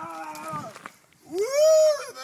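A person's high-pitched whooping yells: a drawn-out call at the start, then a louder whoop that rises and falls, about one and a half seconds in.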